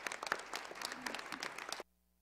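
Congregation applauding: a dense run of hand claps with a voice or two mixed in, which stops abruptly near the end.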